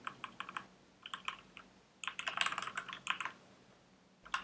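Typing on a computer keyboard in bursts: a few scattered keystrokes in the first second or so, then a quick run of keys from about two seconds in that stops shortly after three seconds.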